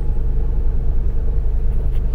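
Steady low rumble of a car in motion, heard from inside the cabin.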